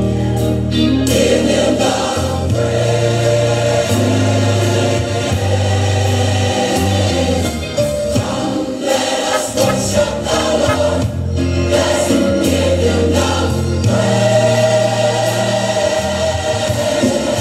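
A choir singing gospel music over instrumental accompaniment, with held low bass notes that change every second or two.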